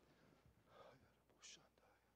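Near silence, with faint whispered speech: a low murmur a little under a second in and a short hiss about one and a half seconds in.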